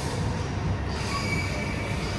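Steady background noise of a large terminal hall, with a faint high whine.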